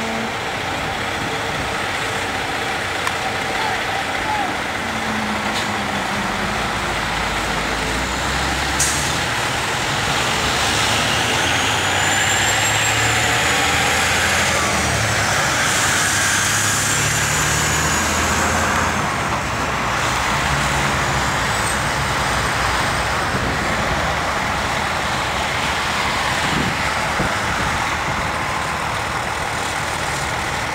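Heavy truck engine running steadily, a rumble with a hiss over it, its low pitch shifting a little. A faint high whine rises and falls about ten to nineteen seconds in.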